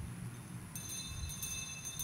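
Faint ringing of small metal bells begins about a second in, a cluster of high steady tones with a few light strikes, over a low room hum.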